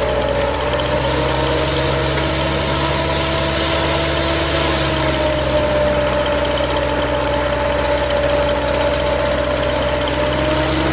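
Truck-mounted soil-testing auger drill rig's engine running steadily, with a steady whine over the rumble that shifts slightly in pitch.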